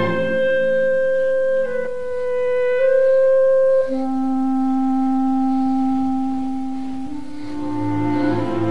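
Orchestra playing a slow, sparse film-score passage of long held notes that step to a new pitch every second or few. The fuller, deeper orchestral sound thins out at the start and returns near the end.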